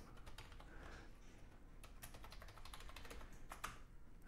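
Faint computer keyboard typing: a scatter of quick key clicks, with a few sharper keystrokes near the end.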